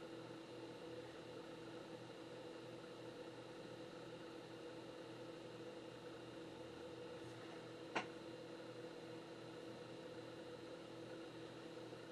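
Faint steady machine hum with a few steady tones in it, and a single short click about eight seconds in.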